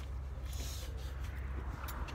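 Clothing and handling rustle as a person climbs out of a car seat with a handheld camera rig, over a steady low rumble.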